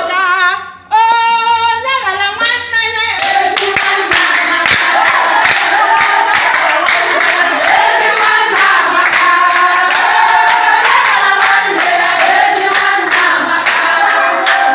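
A group of women singing together with rhythmic hand-clapping. Shortly after the start there is a brief break and a single voice sings alone for about two seconds, then the whole group comes back in with clapping.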